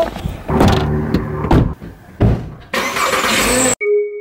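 A car engine running steadily, with two sharp knocks and then a rush of noise, before music cuts in abruptly just before the end.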